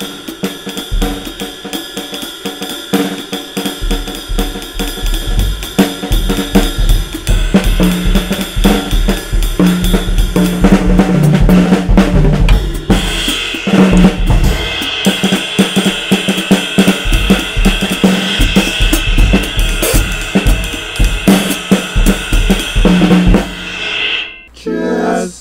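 Acoustic drum kit played with sticks in a jazz style: quick snare and cymbal strokes, the bass drum coming in a few seconds in, and the cymbals ringing louder from about halfway.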